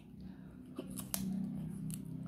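A metal spoon clicking against a ceramic plate of fried rice, about four short sharp clicks, over a low steady hum.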